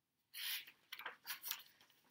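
Page of a hardcover picture book being turned: faint paper rustles, one about a third of a second in and a few smaller ones about a second in.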